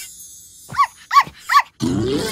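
A cartoon puppy yapping three times in quick succession, each yap a short call that rises and falls in pitch. A louder, deeper sound starts just before the end.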